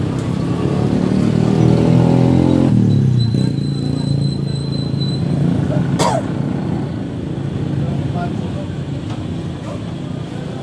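A motorcycle engine running as it passes on the road, loudest in the first few seconds, then traffic fading, with a brief thin high whine in the middle and one sharp click about six seconds in.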